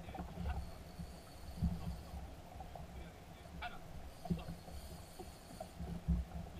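Uneven low rumble of a small boat sitting on the water, with a few faint short clicks.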